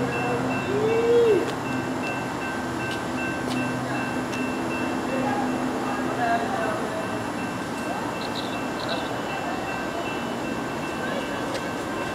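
Approaching CSX freight train, still some way off, led by two GE C40-8W diesel locomotives: a low steady hum that thins out after about five seconds. A short rising-then-falling sound about a second in.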